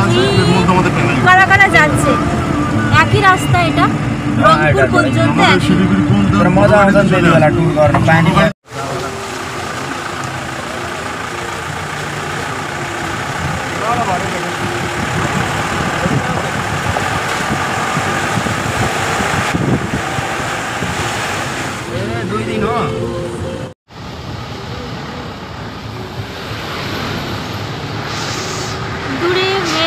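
Steady engine and road noise of a moving vehicle, heard from inside. For the first eight seconds or so, people's voices talk over it. The sound drops out twice for a moment.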